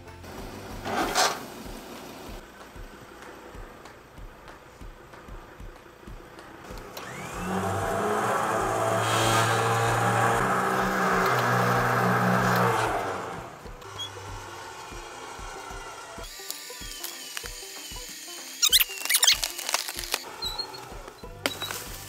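A vehicle-mounted electric winch motor runs for about six seconds in the middle, a steady motor hum as it hauls a fallen tree branch on a synthetic rope. Background music with a steady beat plays throughout.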